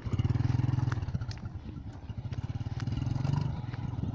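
Small motorcycle engine running at low speed along a rough dirt track, with scattered clatter from the bumps. The engine note softens about halfway, builds again, then eases off shortly before the end.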